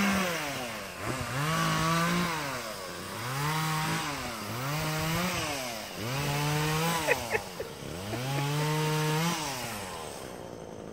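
A small engine revving up and down about six times in a row, each rev climbing, holding steady for about a second, then dropping away.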